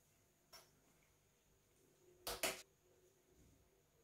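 Small plastic parts of an electric scooter's thumb throttle being handled and taken apart. There is a faint click about half a second in, then two sharp clicks in quick succession a little after two seconds in, with near silence otherwise.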